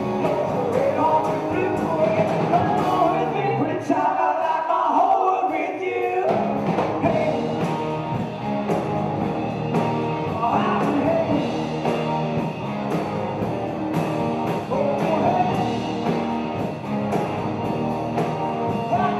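A live rock-and-roll band playing, with a male lead singer, electric bass, guitar and drums. About four seconds in, the low end drops out for about two seconds, leaving the voice on top, and then the full band comes back in.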